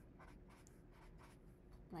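Faint short strokes of a felt-tip marker on paper as small hearts are drawn, a quick run of soft scratches.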